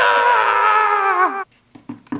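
A drawn-out, animal-like call sliding slowly down in pitch that cuts off suddenly about one and a half seconds in, followed by a few light taps.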